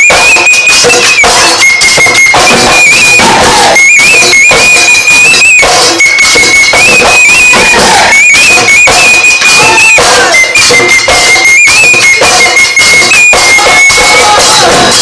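Bihu dhol drums beating a fast, steady rhythm under a high-pitched wind-instrument melody that moves between two or three long held notes.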